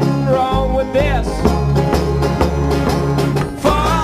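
An acoustic string band playing live: upright bass notes under banjo and acoustic guitar, with a man singing.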